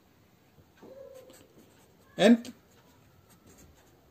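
Ballpoint pen writing on paper: faint scratching strokes as letters are written, broken once by a single spoken word a little after the middle.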